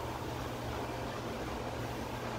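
Steady hum and fan noise from an electric range's oven running its self-clean cycle.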